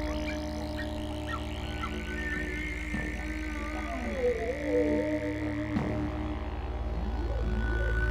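Live improvised band music in a quiet, ambient stretch: a low didgeridoo drone holds steady under sustained tones. Wavering, sliding pitches come in about halfway through and again near the end.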